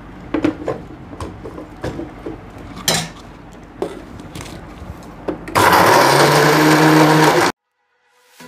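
Clinks and knocks of a steel mixer-grinder jar being set on its base and the lid fitted, then about five and a half seconds in the electric mixer grinder runs loudly for about two seconds, grinding biscuits to crumbs, and cuts off suddenly.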